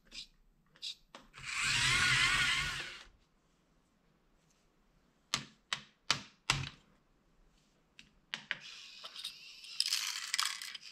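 Small LEGO electric motors in a motorized LEGO Technic garbage truck. A whir lasts about two seconds, then four sharp plastic clicks, then from about eight seconds in a steady motor whir with clicking gears as the side arm lifts the bin.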